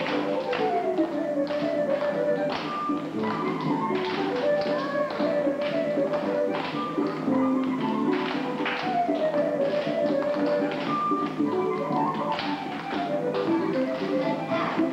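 Recorded dance music playing, with children clapping their hands and tapping their shoes on a wooden floor, giving many sharp claps and taps throughout.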